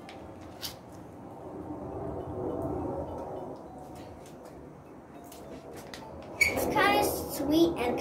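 Foil juice pouch handled and crinkling as a plastic straw is pushed into it, with a short click about half a second in. A girl's voice comes in near the end.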